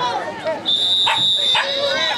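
Referee's whistle blown in one long steady blast starting about two-thirds of a second in, blowing the play dead after the tackle. Voices from the sideline are heard around it.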